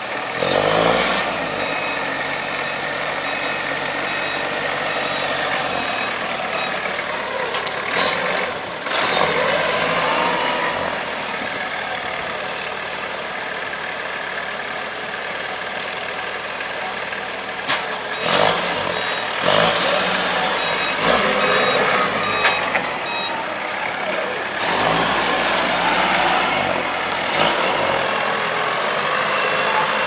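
Forklift engines running and revving as the machines move around handling round straw bales, with a reversing alarm beeping at times. Several brief sharp sounds stand out, about a third of the way in and again past the middle.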